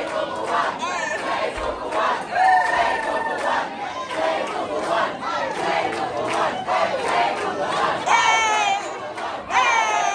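Concert audience cheering and shouting, many voices at once, with a few loud individual whoops about eight and nine and a half seconds in.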